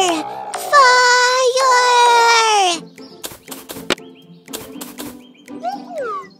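Cartoon sound effects for the bird characters. There are two long vocal calls, each held on one pitch and then sliding down at the end, then a few sharp clicks, and near the end a run of short chirps that fall in pitch.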